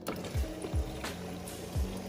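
Water running in a steady stream from a refrigerator door dispenser into a plastic water bottle, filling it, over background music with a regular beat.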